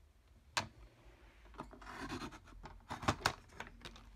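Fiskars sliding paper trimmer cutting a strip of kraft cardstock. A sharp click is followed by the cutting head rubbing along its rail through the card, then a few sharp clicks near the end.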